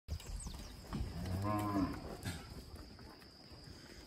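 A young bull calf moos once, a single low call just under a second long, starting about a second in.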